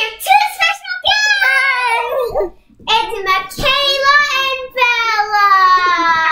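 Young girls singing in high voices, in short held phrases, ending in one long note that slides slowly down near the end.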